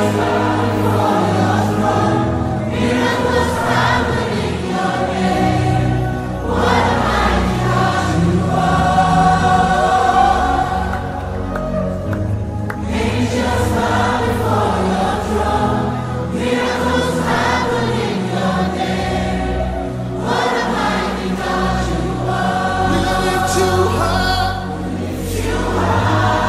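Gospel worship song: a choir sings long held phrases over a steady low bass, with short dips between phrases.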